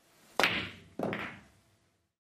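A hard, fast-speed pool shot: a sharp crack as the cue drives the cue ball into the 8 ball, then a second sharp knock about half a second later as a ball strikes the cushion or pocket. Each hit dies away quickly.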